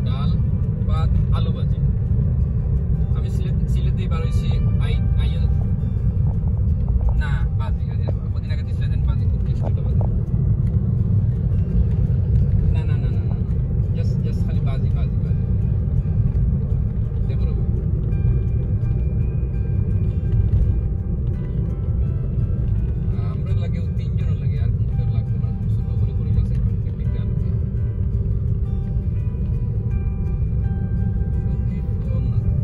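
Steady low rumble of a moving car, heard from inside the cabin, with music and voices over it.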